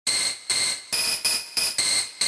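Intro of an electronic EBM track: a bright, high synthesizer tone in short repeated pulses, roughly three a second in an uneven, stuttering rhythm, with no bass or drums yet.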